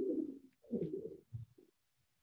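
A person's low, soft laugh in three short bursts, dying away before the end.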